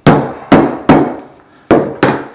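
Mallet striking a hole punch to cut a rivet hole through thick leather: four sharp knocks, three in quick succession about half a second apart and a fourth a little later, each dying away quickly.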